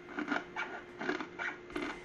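Scissors cutting through the cover of a small basketball along its seam, a series of short snips a few per second.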